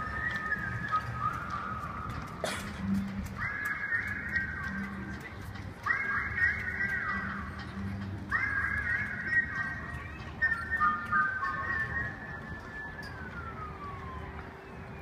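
Music over a ballpark's loudspeakers: phrases of high, sustained chords that start abruptly, the last one sliding down in pitch, over a low crowd murmur. A single sharp knock sounds about two and a half seconds in.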